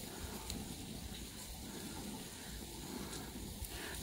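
Steady low hiss and sizzle from a gas grill cooking barbecue-sauced chicken breasts on a grill mat, with wind rumbling on the microphone.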